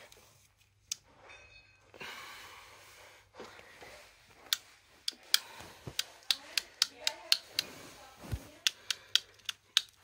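Sharp clicks, irregular and about two a second through the second half, from a hand working a white electrical cable that is not connected.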